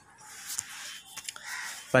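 Paper rustling as the pages of a book are handled and turned, with a few light ticks.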